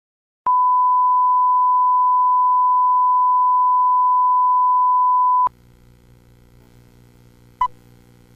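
A steady, pure test tone sounds for about five seconds: the reference tone that runs with TV colour bars. It cuts off suddenly into a faint low hum and hiss, and a single short beep of a film-leader countdown comes near the end.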